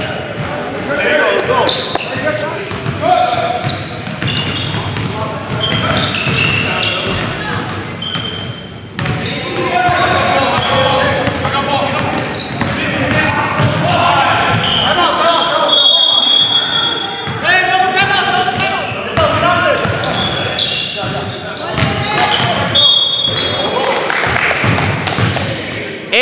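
Basketball game play in a gym: indistinct voices of players calling out, a basketball bouncing on the hardwood floor, and brief sneaker squeaks about two-thirds of the way through.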